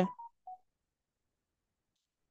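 Two brief, faint electronic beeps, the second lower in pitch than the first, right after a spoken word ends; then dead silence.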